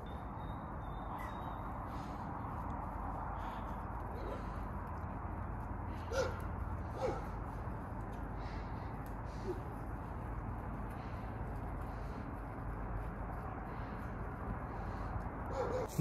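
Quiet outdoor background with a steady low hum, and three short, faint animal calls about four, six and seven seconds in.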